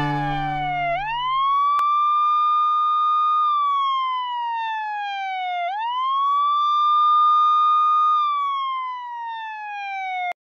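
Wailing siren: one tone rises quickly, holds high, then slides slowly down, in two slow cycles.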